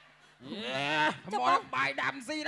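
A man's voice through a handheld microphone: a long drawn-out vocal call lasting under a second, then quick spoken syllables.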